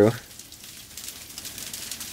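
Hard rain falling on granite boulders: a steady hiss with fine ticks of individual drops.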